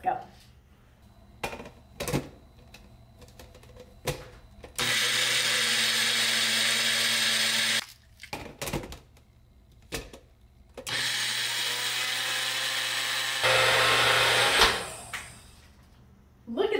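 Magic Bullet blender grinding rolled oats into oat flour, run in two bursts of about three seconds each, the second louder near its end. A few clicks and knocks come before, as the plastic cup is fitted onto the base.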